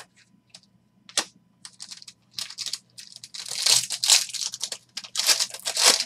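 A sharp click about a second in, then the foil wrapper of a trading card pack being torn open and crinkled, loudest over the second half.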